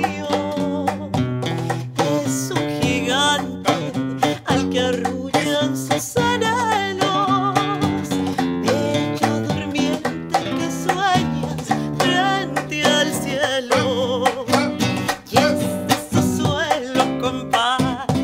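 Acoustic guitar and cajón playing a Peruvian criollo song, the guitar plucked and strummed over the cajón's steady hand-struck beat, with a woman's voice singing in long wavering notes over them.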